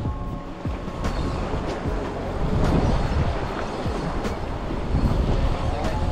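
Wind buffeting the microphone in a steady rumble, mixed with surf washing against the jetty rocks.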